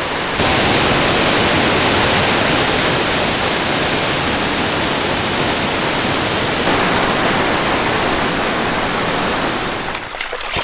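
Sgwd Clun-gwyn waterfall on the Afon Mellte: a loud, steady rush of falling water, stepping up slightly just under half a second in.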